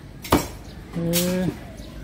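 A butcher's knife chopping raw pork on a wooden chopping block: one sharp chop about a third of a second in. A short voice sounds about a second in.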